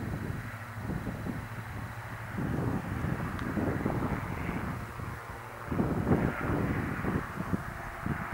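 Diamond DA40 single-engine piston aircraft at full power on a go-around, its engine and propeller drone fading as it climbs away. Wind buffets the microphone throughout, in strong gusts after the drone fades.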